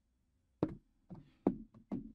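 A quick, uneven run of about six short knocks, starting about half a second in.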